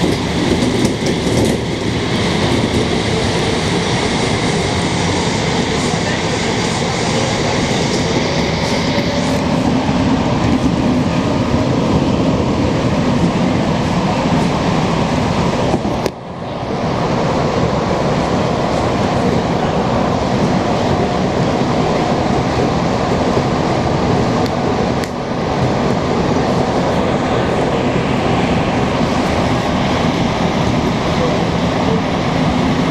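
A Montreal Metro MR-63 rubber-tyred subway car running through the tunnel at speed, heard from inside the car as a loud, steady rumble and rush of running noise. The noise dips briefly about halfway through.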